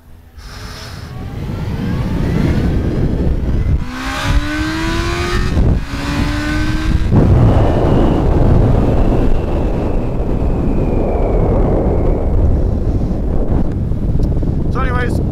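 2001 Yamaha FZ1's 1000cc inline-four engine pulling away hard, its note rising in three pulls with brief breaks at two upshifts. After about seven seconds a steady rush of wind noise on the helmet-mounted microphone takes over at road speed.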